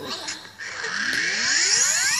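A channel logo intro's rising sweep sound effect, heard through a tablet's speaker. Several tones climb together steadily in pitch, starting about half a second in.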